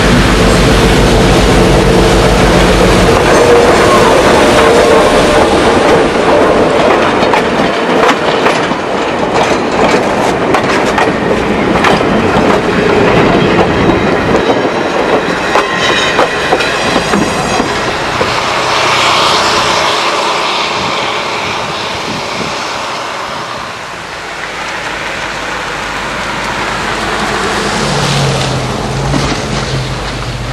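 A GE 44-ton diesel locomotive runs past close by with its engine going. Then the passenger cars roll by, their wheels clicking over the rail joints for several seconds, and the sound fades as the train moves off.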